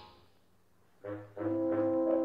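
Orchestral film-score music: the previous passage dies away into near silence, then about a second in low brass comes in, a short note followed by a held chord.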